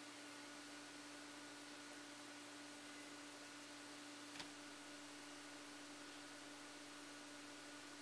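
Near silence: room tone with a steady low hum, and one faint click about four seconds in.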